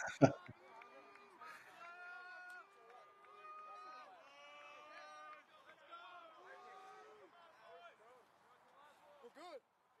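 Faint, distant voices shouting and calling in drawn-out, rising and falling calls, as from players and people around a rugby pitch. A short loud noise comes right at the start.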